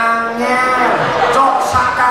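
A man singing long, drawn-out notes into a microphone, amplified through a PA system.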